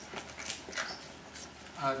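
Dry-erase marker squeaking and scratching on a whiteboard as letters are written, in several short strokes.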